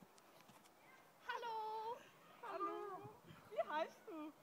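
A girl's high-pitched voice making three wordless sounds: a held note about a second in, a wavering one in the middle, and a short rising and falling squeak near the end.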